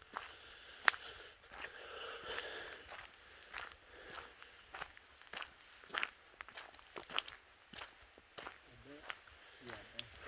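Footsteps on a dirt-and-gravel forest track: an irregular series of short, crunching steps as someone walks along.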